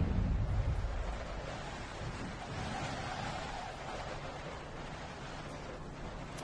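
Broadcast graphics sound effect for an animated weather logo: a loud whoosh that eases off over the first second and a half into a steady, wind-like rushing noise.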